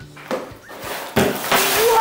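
Plastic bags of LEGO pieces tumbling out of a cardboard box onto a table: a soft rustle near the start, a thump a little over a second in, then a loud rush of crinkling plastic near the end.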